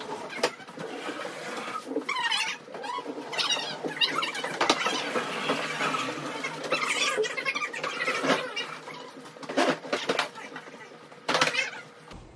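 Sounds of hand-cleaning furniture: short high squeaks of a gloved hand wiping a wooden dresser top, with many clicks, taps and knocks of things being handled, and muffled voices now and then.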